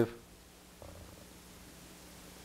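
Quiet room tone with a faint steady hum, just after a man's speaking voice trails off at the very start.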